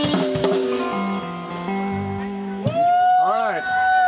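Live blues band closing a song: electric guitar playing a string of held single notes, then a long, loud high note with a wobble from about two and a half seconds in.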